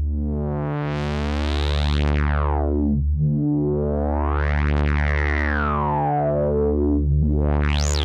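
Korg Prologue analog synthesizer playing a low bass note built from two slightly detuned unison saw waves, with the filter resonance turned up. The filter cutoff is swept open and shut three times, the resonant peak gliding up and back down through the sound, and the last sweep is quick and reaches highest. The note is replayed every few seconds.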